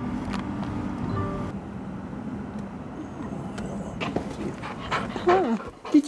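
Music plays for about the first second and a half, then stops. A few faint clicks follow, and near the end a dog gives one whine that slides down in pitch.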